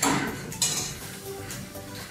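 Dishes and cutlery clinking, two sharp clatters about half a second apart, over soft background music.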